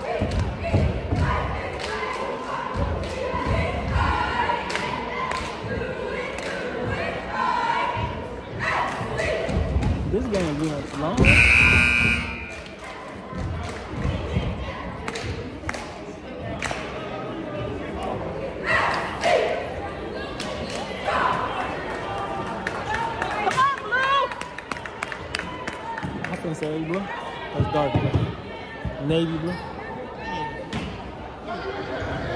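Crowd chatter echoing in a school gymnasium, with occasional basketball bounces. About eleven seconds in, the scoreboard horn sounds once for about a second, ending the timeout.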